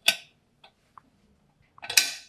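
Knocking on an apartment door: one sharp knock just after the start, a few faint taps, then a quick run of knocks near the end.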